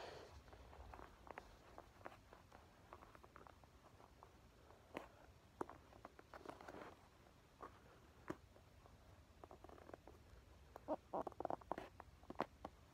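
Near silence with faint, scattered clicks and light scraping of wooden popsicle sticks being handled and pressed together, ending in a quick run of clicks near the end.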